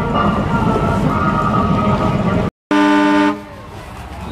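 Busy parade street noise that cuts off abruptly about two and a half seconds in, followed by a single loud vehicle horn honk lasting about half a second.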